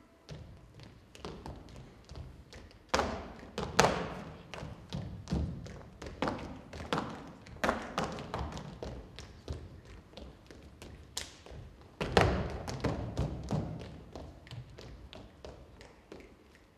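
Irregular thumps and taps of dancers' feet on a stage floor, with louder stamps about three to four seconds in and again about twelve seconds in.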